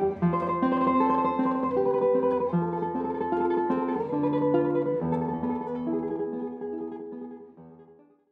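Solo guitar music, plucked notes, fading out near the end.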